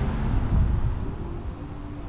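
A car driving past on the street, its low engine and tyre rumble fading away about halfway through.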